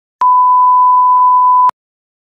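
Electronic test tone: a single steady pure beep about one and a half seconds long, switching on and off abruptly with a click at each end.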